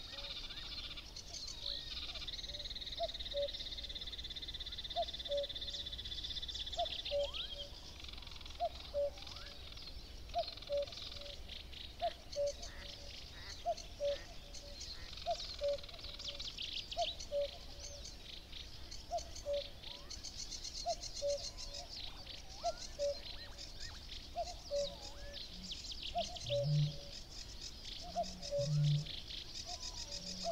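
A common cuckoo calls its falling two-note "cuck-oo" over and over, steadily about every second and a half, over a dawn chorus of high songbird trills and chatter. Near the end a Eurasian bittern booms twice, very deep.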